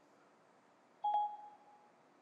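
Siri chime on an iPhone: a single short beep about a second in that fades away over under a second. It marks that Siri has stopped listening and is handling the spoken request.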